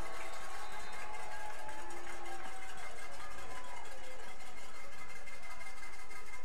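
Steady stadium background noise with faint music underneath, a few held notes at different pitches.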